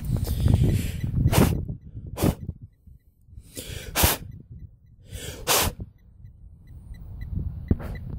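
Fingers rubbing soil off a freshly dug metal button: about five short scraping rubs with pauses between them, after a low rumbling rustle at the start.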